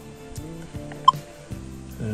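Soft background music with a single short, high electronic beep about a second in: the Minelab X-Terra Pro metal detector's keypad beep as a button is pressed to step to the next setting.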